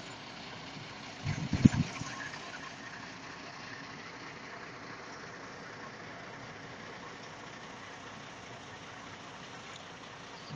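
Steady low noise of stopped vehicles idling at a road closure, with a short burst of low rumbling about one and a half seconds in.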